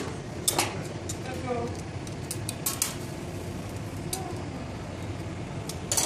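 Several scattered sharp clinks of metal tools and glass against a glassblower's metal workbench while a glass horse sculpture is handled, over a steady low hum.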